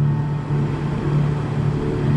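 Live concert music between sung lines: a steady, held low instrumental note with no singing over it.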